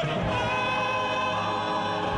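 Operatic male chorus and solo voices singing with an orchestra, holding a long sustained chord.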